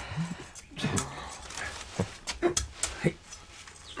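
A man's short, muffled grunts and whimpering cries, with scattered knocks and scuffling, as of a bound person struggling inside a cloth sack on the ground.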